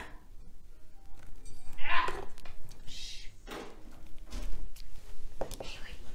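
Soft handling noises of a clear acrylic quilting ruler and fabric being lined up on a cutting mat: a few light rustles and taps, with a brief click near the end as the rotary cutter is taken up.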